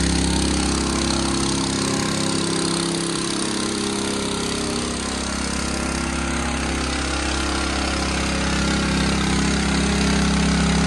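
Small gasoline engine running steadily at an even speed, with a slight drop in its low end a few seconds in.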